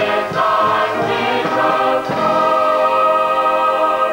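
Mixed choir of men and women singing a stage-musical number, holding a long sustained final chord through the second half.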